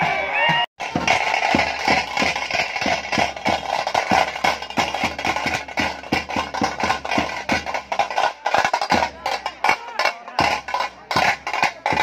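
Fast, loud drumming with many sharp, uneven strokes, starting after a brief dropout near the start.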